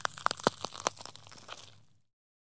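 A quick, irregular run of crackling clicks, densest at first, then thinning out and fading away just before the end.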